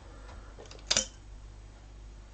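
A single sharp click about a second in, over quiet room noise.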